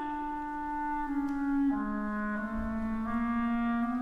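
Clarinets playing a slow, quiet phrase of long, steady notes that step downward, with two or more parts moving together, in a classical orchestral passage.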